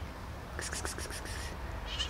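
A long-haired grey-and-white domestic cat meows once near the end, a short, high, wavering call. About halfway through there is a quick run of about six sharp ticks.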